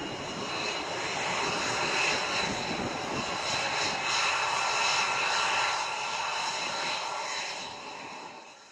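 F-22 Raptors' twin turbofan engines running at low taxi power: a steady jet roar with a whine of several high tones, swelling slightly midway and fading near the end.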